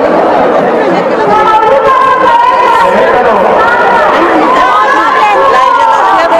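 Several people talking over one another: overlapping chatter of voices in a crowd, with no single clear speaker.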